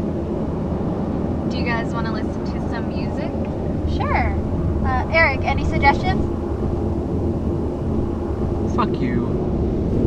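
Steady road and engine noise inside the cabin of a moving Chevrolet car at highway speed.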